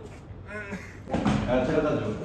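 Indistinct voices: faint at first, then louder chatter with background noise from about a second in.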